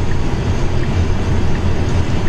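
Steady road and wind noise inside the cabin of a moving Tesla Model 3 Performance electric car on a motorway: a constant low rumble under an even hiss.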